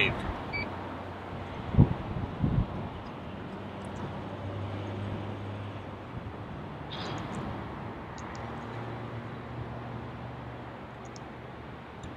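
Toyota power driver's seat motors running as the memory seat returns to its saved position: a steady low hum in two stretches of a few seconds each, with a couple of soft thumps near the start and a short click in between.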